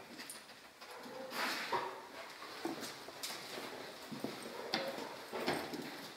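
A detection dog working over wooden scent boxes: short, noisy sniffs and scuffs of its paws on the boxes and floor, in separate bursts a second or so apart.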